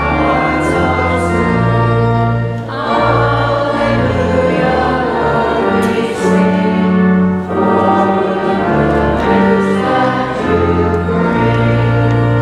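Congregation singing the gospel acclamation, a hymn sung in held chords over organ accompaniment with steady bass notes.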